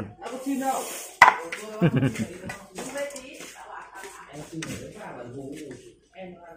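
A knife strikes a wooden chopping board once, sharply, about a second in. Softer knocks and clinks of the knife and plates follow, mixed with laughter and low voices.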